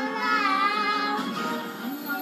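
A young girl singing, holding long notes that waver in pitch.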